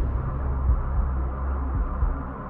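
Electronic dance music from a DJ set: a sustained deep bass drone under a hazy, hissing wash, with a few soft low thumps.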